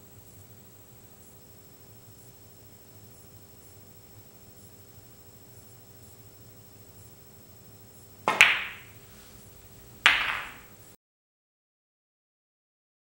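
A gentle snooker shot: a light tap of the cue tip, then at once a sharp click as the cue ball, played with extreme right-hand side and backspin, strikes the object ball. About two seconds later a second sharp click of balls striking follows, each click ringing briefly. The sound then cuts off abruptly.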